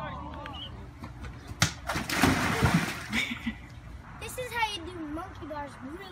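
A sharp thud, then about a second of loud splashing water, as a child lands in a plastic kiddie pool. A child's high, wavering voice follows.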